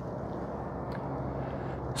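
Steady low background noise with no distinct event, and a faint tick about a second in.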